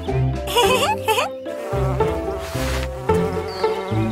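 Cartoon bee buzzing sound effect, a wavering buzz that rises and falls in pitch, over light background music with a repeating bass line.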